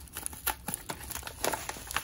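Yellow plastic bubble mailer crinkling and rustling in the hands in a run of irregular crackles, with the sharpest about half a second and a second and a half in.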